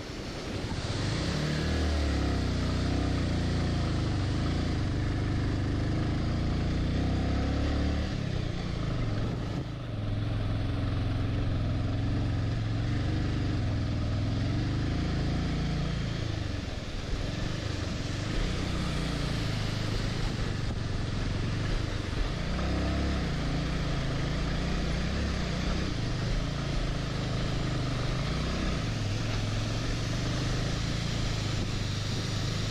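Motorcycle engine running as the bike rides a rough gravel track. Its pitch rises and falls with the throttle, starting about a second in after a brief dip.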